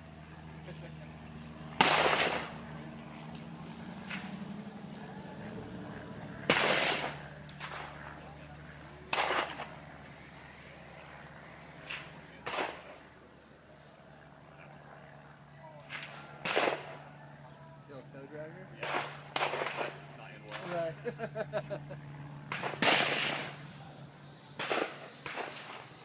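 Gunfire from a shooting range: about a dozen sharp shots at irregular intervals, each with a short echoing tail, some coming in quick pairs.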